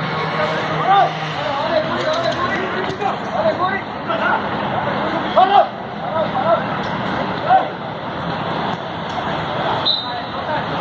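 Players and spectators shouting short calls across an outdoor futsal court, the loudest about five and a half seconds in, over a steady background hum of crowd and street noise.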